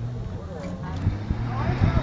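Distant six-cylinder engine of a modified Jeep CJ5 running at steady revs under load as it climbs a steep dirt hill, with onlookers' voices over it.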